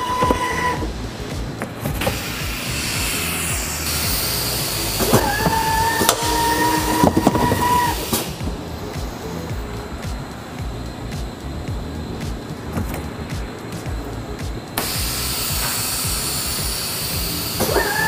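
Palletizing robot cell running: a Doosan collaborative robot arm with a vacuum gripper moves boxes off a roller conveyor, with electric motor whine and steady machine noise. A steady whine is heard for about three seconds near the middle.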